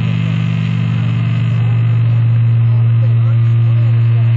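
Loud steady low electrical hum from the band's stage amplifiers, with no music being played.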